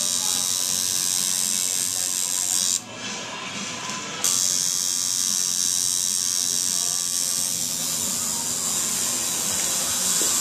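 Coil tattoo machine buzzing steadily while tattooing skin; it stops for about a second and a half some three seconds in, then starts again abruptly.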